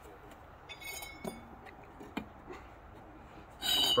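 Steel brick trowel clinking and scraping against bricks and stiff mortar: a few faint clicks, then a louder ringing metallic scrape near the end.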